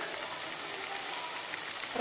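Mint paste frying in oil in a stainless steel kadai, a steady sizzle, with a few faint clicks near the end. The paste has been sautéed until the oil separates and rises to the top.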